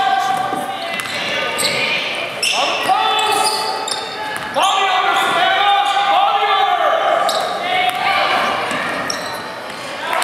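Basketball game sounds in a large, echoing gym: a ball bouncing on the hardwood floor and voices calling out.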